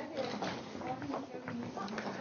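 Several people talking quietly at once in the background, with a few scattered light taps.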